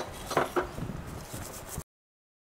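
Steel wool scrubbing a wet, sooty gas-stove pan support, with a couple of light metal knocks about half a second in. The sound cuts off abruptly to silence near the end.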